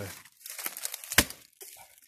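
A tree knock: a single loud, sharp crack of wood striking a tree trunk about a second in, after a brief patch of crackling from dry bush.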